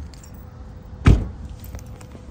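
A car door shut with a single heavy thump about a second in, with keys jangling lightly around it.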